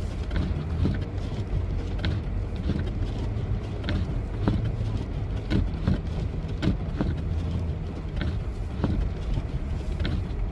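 Car driving through a blizzard, heard from inside the cabin: a steady low rumble of engine, road and wind, broken by irregular sharp ticks about once or twice a second.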